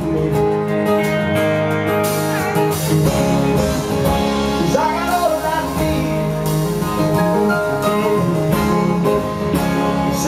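Live band playing a song: strummed acoustic guitar with electric guitar and bass, loud and continuous.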